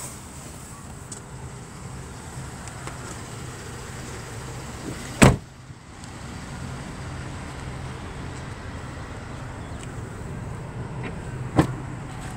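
A car door shut once with a solid slam about five seconds in, over the steady low hum of the GMC Acadia's 3.6-litre V6 idling. A short click comes near the end.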